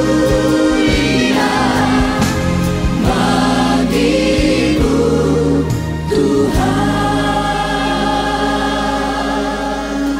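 A choir sings a gospel worship song over accompaniment, with phrases that rise and fall. About two-thirds of the way through it settles into one long held chord.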